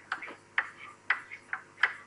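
Chalk tapping on a blackboard during writing: about seven short, sharp taps at an irregular pace.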